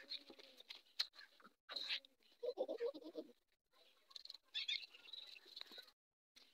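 Faint animal calls: a short wavering call at the start and a stronger one near the middle, among scattered light clicks.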